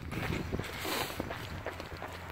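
A runner's footfalls on pavement: a string of soft, irregular thuds.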